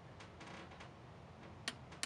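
Two short, sharp clicks near the end from a small tactile push button being pressed on a buck converter module's control board, over faint room noise.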